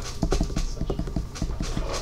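A rapid, irregular run of small taps or clicks, about seven or eight a second, over low room hum.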